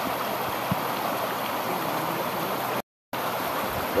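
Fast, shallow hot-spring stream rushing over rocks: a steady rush of water, broken by a sudden gap of silence lasting about a third of a second, a little before the end.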